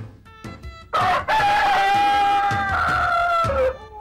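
A rooster crowing once, starting about a second in: one long call held for nearly three seconds that drops in pitch at the end, over soft background music.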